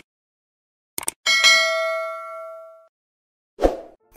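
Subscribe-button sound effect: two quick mouse clicks, then a bell ding that rings out for about a second and a half. A short dull whoosh follows near the end.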